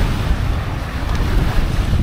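Wind buffeting the microphone in a steady low rumble, over small waves washing up onto a sandy beach.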